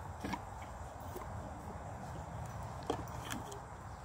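A low steady background hum with a few faint, scattered knocks and clicks.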